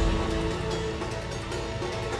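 Dramatic background score: a sudden low hit at the start, then held, sustained tones.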